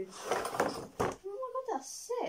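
A wooden folding easel being slid out of its cardboard box: a scraping rustle, then a sharp wooden knock about a second in.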